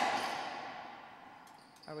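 A racquetball hit on the court, loud and sudden, its echo in the enclosed court dying away over about a second and a half.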